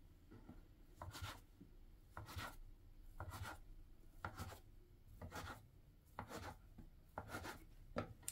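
Plastic bench scraper cutting through a log of soft yeast dough and tapping down on a stone countertop, faintly, about once a second as each piece is cut off.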